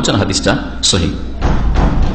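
A man's voice speaking a few short syllables into a microphone, then a dull low thump in the last half second.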